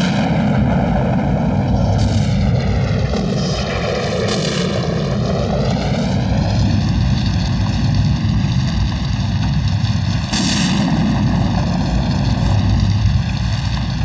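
Aircraft flying past: a loud, steady engine noise whose tone sweeps down and then back up as it passes.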